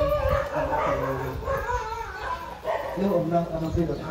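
Voices throughout, and about three seconds in a group calls out the acclamation "sadhu" in a long, held unison.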